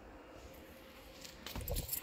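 Faint background hum, then about a second and a half in a short spell of rustling and light knocks from handling in a car's boot.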